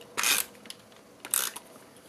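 Two short dry rasps of adhesive work on cardstock, one just after the start and one about a second and a half in: a hand-held snail tape runner laying adhesive strips and the hand rubbing across the card.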